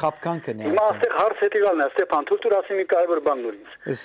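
Speech only: a voice heard over a telephone line, thin and narrow-sounding, with a man's studio voice coming in briefly near the end.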